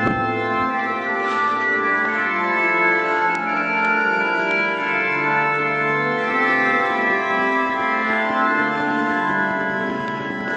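Organ music: sustained chords held for a second or more each and changing slowly, at a steady level.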